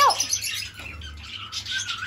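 Small pet parrots chirping and chattering in quick high twitters.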